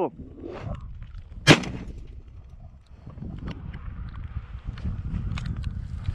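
A single gunshot about a second and a half in, fired at a flushed rabbit through thick brush: a blind shot into the trees.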